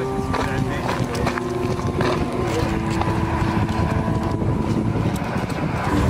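Background music: a voice singing long, drawn-out held notes that step from one pitch to the next every second or two, over a steady low rumble.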